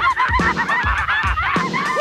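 Cartoon dogs laughing, a quick run of short, honking cackles one after another, over a rap backing beat that thumps about twice a second.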